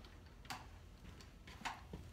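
Crutch tips and feet tapping the floor in a slow four-point crutch walk: two distinct taps a little over a second apart, with fainter ticks between them.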